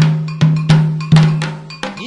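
Candomblé ritual music for Oxum: atabaque hand drums and a bright bell struck in an uneven, syncopated rhythm. Each drum stroke rings on low for a moment.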